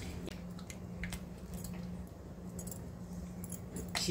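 Red silicone spatula stirring blueberries in an aluminium saucepan: faint scraping and a few small clicks against the pan, over a low steady hum.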